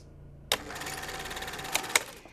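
Scene-transition sound effect: a sudden, rapid mechanical buzzing clatter with a steady hum, starting about half a second in and ending in a couple of sharp snaps.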